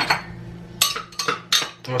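A utensil knocking and clinking against a glass blender jar: about half a dozen sharp strikes, most of them in the second half, as a thick mix that the blender is struggling with is worked loose by hand.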